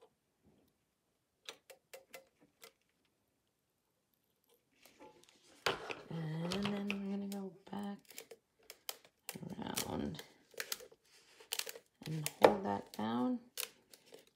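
A woman's wordless voice, a drawn-out hum followed by short murmurs, with light clicks and taps from handling a hot glue gun and pressing a wire letter onto a galvanized metal pail. The first few seconds hold only a few faint clicks.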